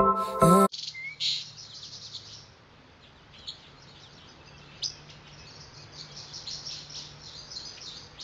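Music breaks off under a second in, then birds chirp steadily: many short, high calls over a faint low hum.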